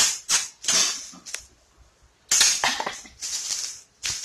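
Repeated kisses close to the microphone: several quick kisses in the first second, then two longer, breathier kisses near the end.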